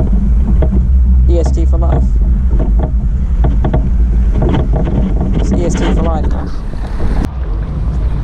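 Wind buffeting the microphone outdoors, a heavy low rumble, under indistinct talking voices, with a sharp click about seven seconds in.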